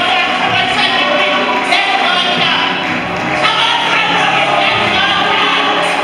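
Gospel praise and worship music: a worship team and congregation singing over keyboard accompaniment, running steadily throughout.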